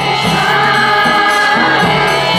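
Kirtan: a group of devotees singing a devotional chant together in long held notes, over a steady percussion beat about twice a second.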